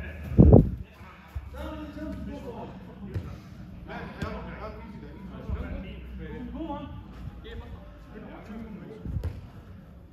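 A loud, heavy low thud about half a second in, then indistinct men's voices and a few short knocks of a football being kicked on artificial turf in a large indoor hall.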